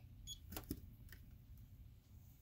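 Low steady hum with a few faint clicks: a short high, tone-like click just after the start, then two sharper clicks a little over half a second in.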